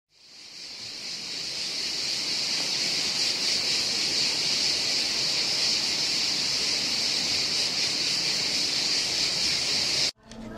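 Cicada buzzing: a steady, high-pitched drone that fades in over the first second or two and cuts off abruptly at the end.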